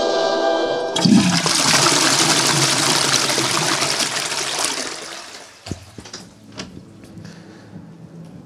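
Toilet flushing: a sudden rush of water about a second in that gradually dies away over about four seconds, followed by a few faint clicks.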